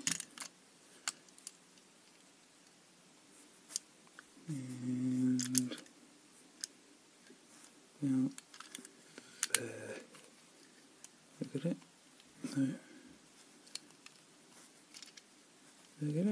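Scattered light metallic clicks and scrapes from a tensioner and pick wire working the levers inside an FB 14 four-lever padlock while it is being picked, with a few short low murmured vocal sounds from the picker between them.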